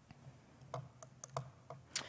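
A few faint, sparse clicks in a pause, with a sharper click near the end.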